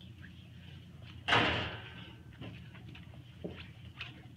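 A single sharp bang about a second in, fading over about half a second, amid faint clicks and rustling.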